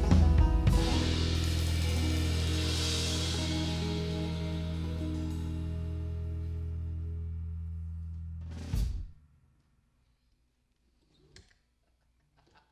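A live band with banjo, guitar, bass and drums hitting its closing chord: drum and cymbal strikes in the first second, then the chord ringing and slowly fading. About nine seconds in, one last short hit cuts it off, leaving near silence.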